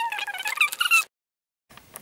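A very high-pitched voice talking, with a pitch far above an ordinary speaking voice, that stops abruptly about halfway through.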